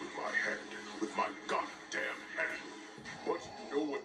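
A film's sound track playing from a TV speaker and picked up in the room: music with voices and sound effects.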